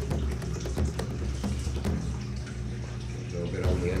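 Salt sprinkled by hand onto a trout fillet on a foil-lined baking tray: scattered light ticks of grains landing, thickest in the first couple of seconds.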